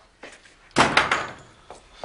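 A wooden double door is pushed shut. It closes with a loud bang about three quarters of a second in, followed by a brief rattle of the door leaves.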